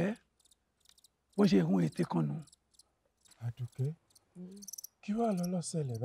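A man's voice speaking dialogue in several short phrases separated by brief pauses.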